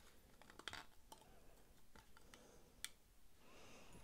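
Faint small clicks and light taps of a folding knife's metal parts as they are fitted together by hand, with a few scattered clicks and the sharpest one a little before three seconds in.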